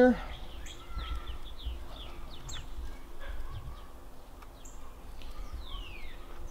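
Birds chirping: short, faint, falling whistled notes every second or so, over a low rumble.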